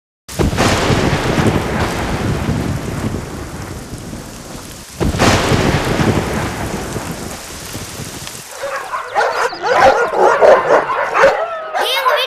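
Thunderstorm sound effects: a sudden thunderclap that rolls away over rain, then a second clap about five seconds in. Near the end, rapid overlapping high calls that bend in pitch come in over the rain.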